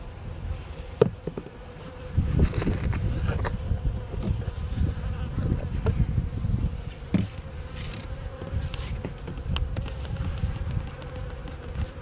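Honeybees buzzing steadily around an open hive, over a low rumble, with a sharp click about a second in.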